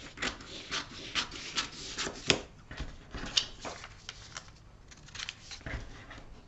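Scissors snipping through a paper sewing pattern along a drawn line: a quick run of cuts, about two or three a second, that thins out after about four seconds.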